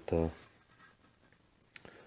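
A short spoken 'uh', then near quiet with faint scratchy handling noise and a few light clicks about two seconds in.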